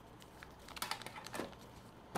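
Small folded paper slip being unfolded by hand, giving a quick run of light crisp crackles and clicks about halfway through.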